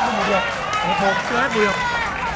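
Spectators shouting and calling out, several voices over one another.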